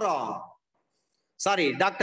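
A man speaking, lecturing in Tamil. His speech trails off about half a second in, there is a pause of near silence for nearly a second, and then he speaks again.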